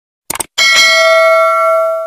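Subscribe-button sound effect: a brief click, then a bright notification-bell ding with several ringing tones that fades slowly.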